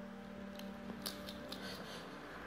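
A pet skunk crunching a small hard treat held out in the fingers, a handful of sharp crunches in the second half. A steady low hum runs underneath.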